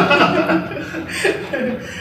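A woman and a man chuckling briefly in short bursts that die away.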